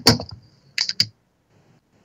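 A few sharp clicks, like keys or buttons being pressed: two close together at the start and two more just under a second in.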